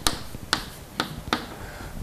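Chalk tapping sharply on a blackboard as symbols are written, about four separate taps at uneven intervals.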